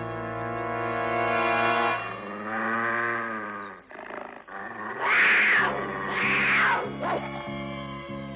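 Dramatic orchestral music with held brass chords, then a cartoon wildcat snarling twice, about five and six seconds in, over a low pulsing beat in the score.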